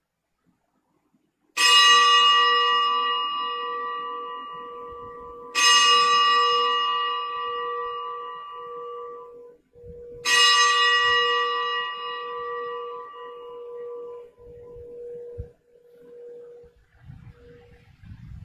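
A bell struck three times, about four seconds apart, each stroke ringing out and slowly dying away: the consecration bell rung at the elevation of the host during Mass.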